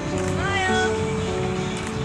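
Music with long held notes, crossed about half a second in by a short cry-like sound that rises and falls in pitch.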